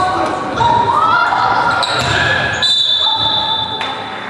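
Live basketball play in a large, echoing sports hall: sneakers squeak in short high chirps on the hardwood court, the ball bounces, and players' voices call out.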